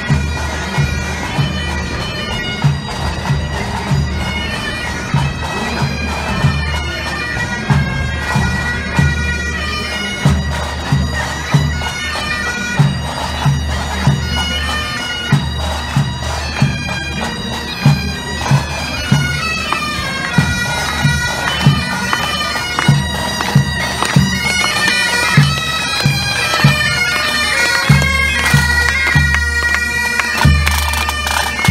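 A pipe band playing on the march: bagpipes playing a tune over their steady drone, with snare drums beating a regular marching rhythm.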